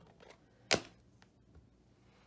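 A single sharp tap on the craft table, then a fainter tick about half a second later, as a blending tool and stencil are worked over the tag.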